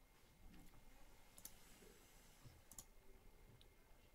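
Near silence: room tone with a few faint clicks, one about a second and a half in and another near three seconds in.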